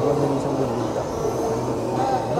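Animated Santa Claus figure with a saxophone playing a recorded tune, with a murmur of voices underneath.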